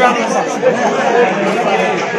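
Several men talking at once: overlapping, loud chatter.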